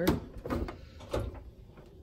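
Galley oven door being shut: a short knock at the start and another clunk about a second in.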